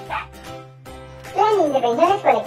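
Puppies yapping, a quick run of three or so short barks in the last half-second, over steady background music.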